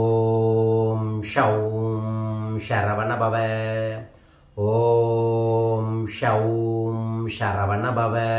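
A man chanting a mantra on one steady pitch, in two long phrases, each opening with a long held syllable. There is a brief pause for breath about halfway through.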